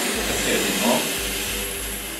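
Helium hissing steadily out of a disposable helium tank's nozzle into a latex party balloon as it fills.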